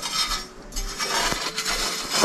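A hand tool scraping and rubbing through ash and coals in the firebox of a wood-burning fireplace insert, digging out coals banked under ash overnight. Two stretches of scraping with a short lull about half a second in.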